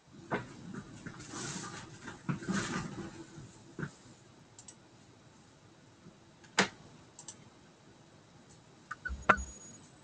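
Rustling and handling noise on a computer microphone for the first few seconds, then a few separate sharp clicks, the loudest near the end.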